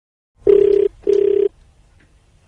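Telephone ringback tone: one double ring, two short buzzing pulses a moment apart, the sound a caller hears while the phone at the other end is ringing.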